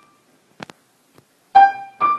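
Single piano notes struck one at a time at uneven intervals. A note from just before fades out at the start, two sharp clicks come about half a second in, and a loud new note is struck about one and a half seconds in and rings on.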